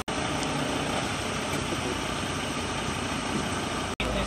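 A vehicle engine idling steadily, an even low running hum with no change in speed.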